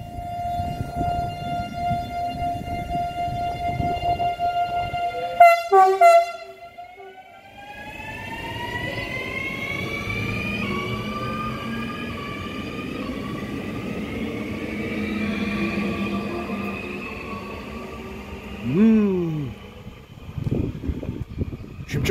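Škoda RegioPanter electric multiple unit: a steady electric whine while it stands, two short loud sounds about five and a half seconds in, then the whine of its traction motors rising steadily in pitch as it pulls away and accelerates past.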